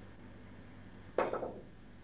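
A single sharp click of a snooker cue tip striking the cue ball about a second in, played as a swerve shot with the cue raised and hitting down on the ball. A short word follows right after the click.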